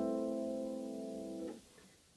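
Harp chord ringing and slowly fading, then stopped short about three quarters of the way in as the harpist damps the strings with the flats of her hands.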